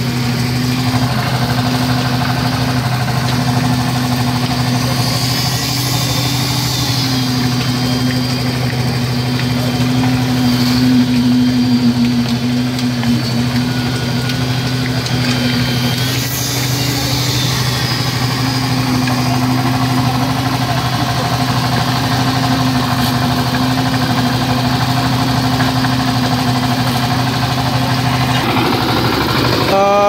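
A concrete mixer's single-cylinder diesel engine running steadily, its pitch shifting slightly now and then.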